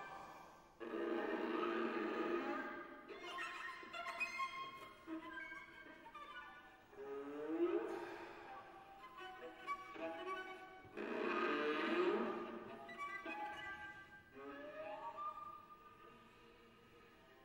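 Live contemporary chamber music led by a violin: held notes and upward sliding glides, broken twice by loud, dense swells of sound.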